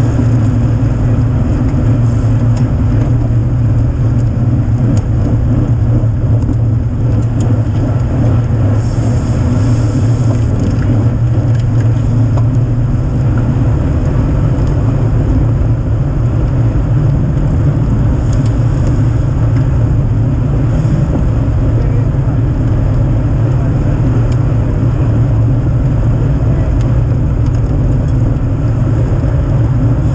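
Steady wind rush on the microphone and tyre roar from road bicycles riding at speed in a tight race pack, a constant low rumble.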